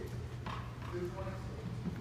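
Faint, indistinct voices of people talking at a distance, over a steady low hum, with a few light knocks.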